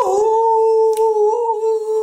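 A man's voice holding one long, high, steady note, a sustained hum or 'ooh' of reaction, with a single click about a second in.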